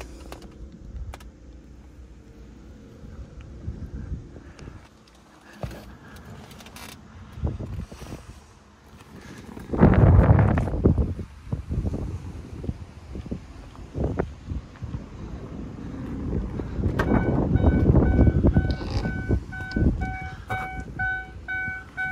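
Handling noise from a hand-held camera moving around a car: rustling and knocks, with a loud rush about ten seconds in. Near the end, the car's interior warning chime sounds in rapid, evenly repeated beeps.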